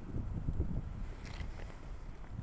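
Low, uneven rumble of wind buffeting a handheld camera's microphone outdoors.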